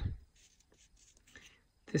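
Faint rustling and scraping of a die-cut cardboard piece being bent by hand along a scored fold line.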